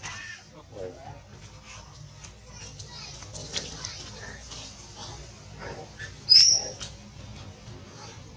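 Long-tailed macaques making scattered short calls, with one sharp, high-pitched squeal about six seconds in that is the loudest sound.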